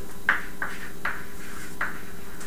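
Chalk on a blackboard: four short, sharp chalk strokes as a word is written, over a steady room hum.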